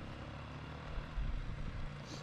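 A steady low engine hum from a distant motor vehicle, with a low rumble beneath it.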